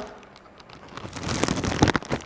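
Clear plastic camera rain cover crinkling and rustling as it is handled and its drawstring is pulled tight around the camera. It starts faint and builds to a run of crackles over the second half.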